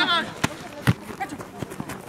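A player's short shout at the start, then two sharp thuds of a football being kicked on a grass pitch, about half a second apart, among scattered calls from players.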